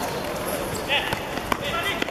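A football being kicked on artificial turf, with sharp thuds about a second in and again half a second later. Players shout over the play.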